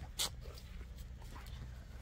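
A pet dog close to the microphone giving one short, breathy sound about a quarter second in, followed by a few faint small sounds over a quiet background.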